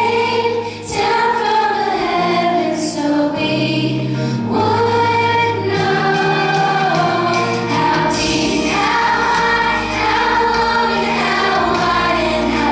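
A children's choir singing a worship song together with instrumental accompaniment.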